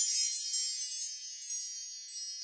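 A shimmering chime sound effect: many high, bell-like tones ringing together and slowly fading.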